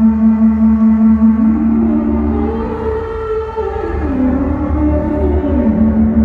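Soma Pipe synthesizer on its Orpheus algorithm, played through its mouthpiece: a steady note rich in overtones over a pulsing low drone. About a second and a half in, a voice-like line glides up, wavers and slides back down into the steady note near the end.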